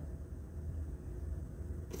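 Room tone: a steady low hum with a faint hiss, no voice.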